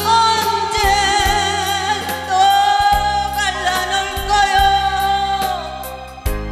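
A woman singing a Korean trot ballad live into a microphone, holding two long notes with vibrato, the second tapering off near the end, over instrumental accompaniment with a steady beat.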